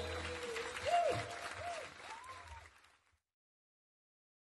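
Audience applause with a few voices calling out, fading and then cutting off abruptly just before three seconds in.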